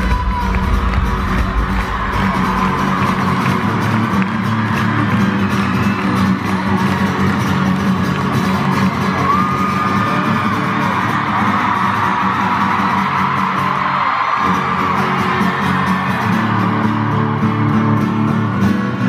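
Live amplified acoustic guitar played on stage through an arena sound system, with fans screaming and whooping over it. The deep bass underneath drops out about two and a half seconds in, leaving mostly the guitar and the crowd.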